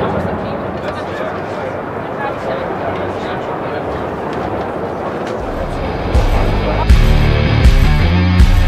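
Background chatter of a crowded exhibition hall, with indistinct voices. About six seconds in, loud guitar rock music with a heavy beat starts.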